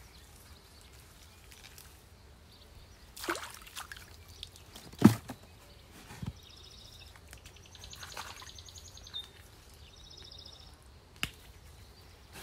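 Gloved hands pulling water celery out of a shallow muddy ditch: scattered short splashes and rustles of wet plants in the water, the loudest about five seconds in. A bird trills faintly in the background several times.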